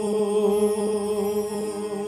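Devotional bhajan music opening: a keyboard holds steady sustained notes without a break, with faint light ticks in the background.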